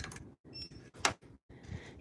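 Plastic clothes hangers clicking and scraping against a metal display bar as garments are pulled off and flipped through: a few light clicks with rustling between, the sharpest about a second in.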